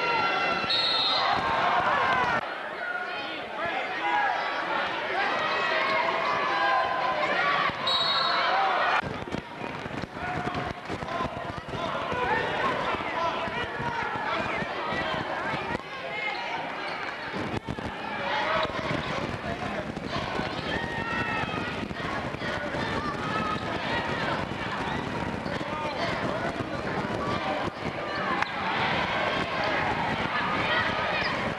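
Spectators and people courtside talking and calling out in a gymnasium during a basketball game, with a ball bouncing on the court.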